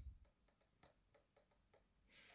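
Near silence: faint room tone with very faint, evenly spaced ticks.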